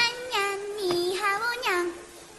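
A song: a high-pitched voice singing a melody, moving from note to note.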